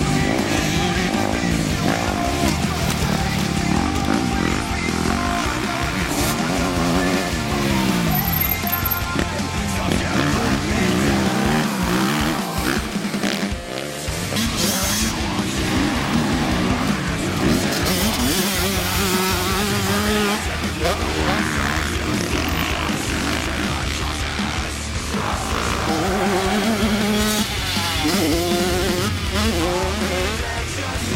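Dirt bike engines revving up and down as the motocross bikes accelerate and shift past, mixed with loud music.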